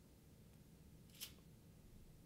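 Near silence: room tone, with one brief faint noise about a second in.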